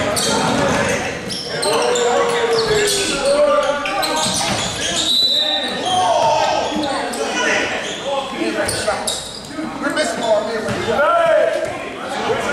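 A basketball being dribbled on a hardwood gym floor during live play, mixed with players' voices calling out, all echoing in a large gym.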